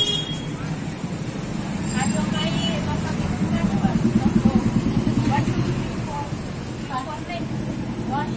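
Vehicle engine rumble from street traffic, swelling to its loudest about four seconds in and then easing off, with people talking quietly over it.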